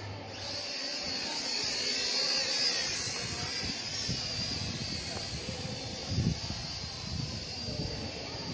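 Small drone's electric motors running: a high whine that wavers in pitch, loudest about two to three seconds in, with faint voices underneath.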